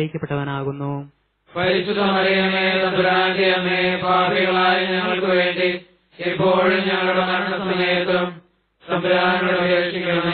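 Malayalam rosary prayer chanted on a held, nearly level pitch, in long phrases broken by short pauses about a second in, at about six seconds and at about eight and a half seconds.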